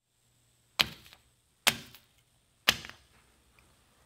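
Three sharp stab-hit sound effects about a second apart, each with a short fading tail: a toothpick weapon striking one character after another.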